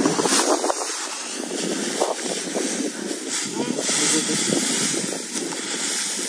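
Dry rice straw rustling and crackling in irregular bursts as hands push through it and grab at it.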